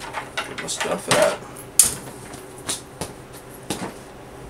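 Handling noise from hard plastic RC truck body and chassis parts being moved about on a wooden desk: a series of clicks and knocks, the sharpest a little under two seconds in, with a few lighter ones after.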